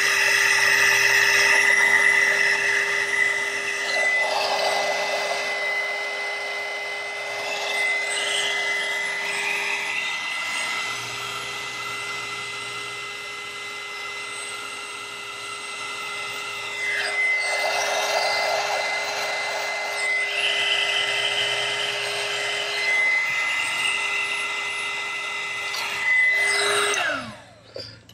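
Electric heat gun running steadily on heat-shrink tubing over soldered wires, its motor whine holding one pitch. Near the end it is switched off and the whine falls away as the fan spins down.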